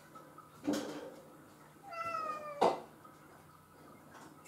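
A domestic cat meowing: a short call under a second in, then a longer meow about two seconds in that falls slightly in pitch, ending in a brief sharp click.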